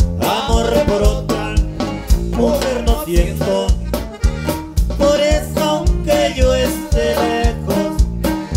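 Live norteño band music: an accordion melody over bajo sexto and bass, with a steady beat.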